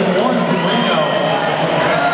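Spectators at a swim race shouting and cheering, many voices overlapping in a steady din, echoing in an indoor pool hall.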